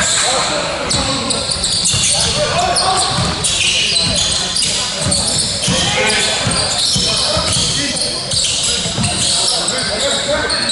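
A basketball bouncing on a hardwood court, with repeated short thuds, alongside sneakers squeaking on the floor and players' voices, echoing in a large hall.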